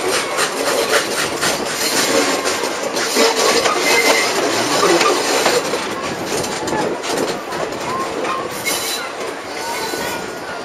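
Passenger coaches of a steam-hauled train running on the rails, heard from an open carriage window: a steady rumble of wheels with irregular knocks over the track, easing a little near the end.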